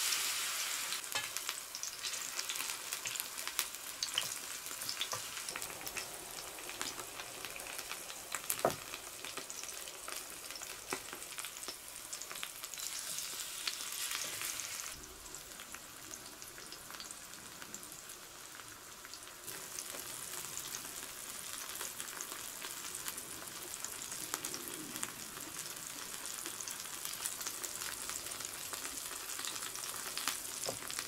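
Battered tara-no-me shoots deep-frying in oil in a small pan: a steady sizzle full of fine crackles, loudest right at the start as a fresh piece goes in, with one sharp pop about nine seconds in and a quieter stretch a little past the middle. The oil is sesame oil at a low temperature, which keeps the frying gentle.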